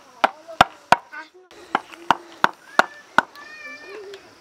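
Wooden mallet driving a chisel into timber as a wooden plough is carved by hand: sharp knocks about three a second, with a short break about a second and a half in.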